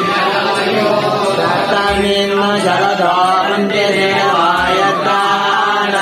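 Devotional music: voices chanting a mantra over a steady drone, with a low beat about every two and a half seconds.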